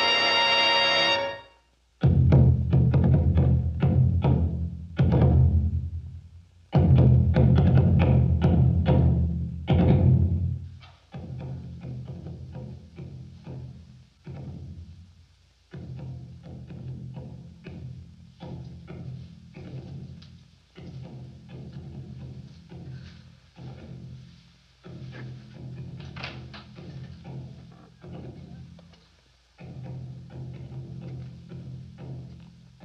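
Film score: a held orchestral chord cuts off near the start, then rapid, heavy drumming begins. The drumming is loud for about eight seconds, then goes on more quietly in repeated phrases.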